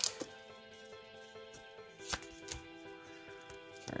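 Soft background music of steady held notes, with a few short crackles and clicks of a foil Pokémon booster pack wrapper being torn open and handled: near the start, about two seconds in, and just before the end.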